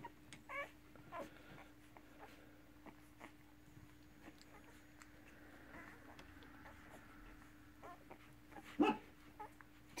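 Newborn working kelpie pups suckling at their mother, giving faint short squeaks and small whimpers, with soft clicks. One louder squeak comes near the end. A steady low hum runs underneath.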